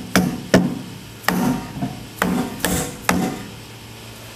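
A hammer tapping a new metal insert plate down into a bandsaw table opening: about six sharp knocks at uneven intervals. The plate is a tight fit, its locating pin a little large for the hole.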